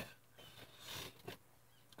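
Faint, short breathing sounds from a nauseated man, an exhale about a second in, with near silence around it.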